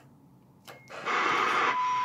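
Ranger RCI-2950 10-metre radio's speaker muted to near silence while the mic is keyed, then a click and a short high beep as the key is released. The receiver hiss comes back about a second in, and near the end the steady test tone of the signal generator's FM signal returns through the speaker.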